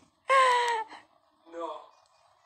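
A child's high-pitched excited exclamation, a wordless gasp of delight at an unwrapped present, slightly falling in pitch, followed near the end by a shorter, quieter vocal sound.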